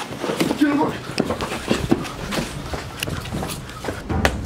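Men's voices without clear words, mixed with scuffling knocks and footsteps.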